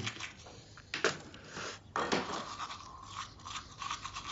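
Teeth being brushed with a manual toothbrush, scrubbing in uneven strokes.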